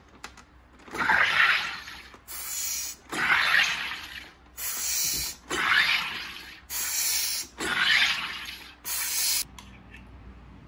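A SodaStream carbonator injecting CO2 into a bottle of water in four presses, each about a second long, each followed by a shorter, higher hiss. The water is being carbonated into sparkling water.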